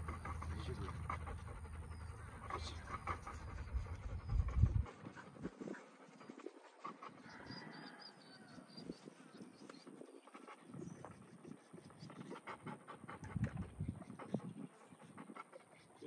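A dog panting, over a low wind rumble on the microphone that cuts off abruptly about five seconds in; fainter scattered outdoor sounds follow.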